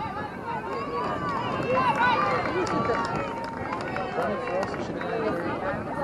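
Many overlapping voices chattering and calling out at once, a crowd of spectators and players, with no single voice standing out.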